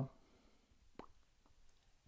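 Near silence: quiet room tone, with one faint short click about halfway through.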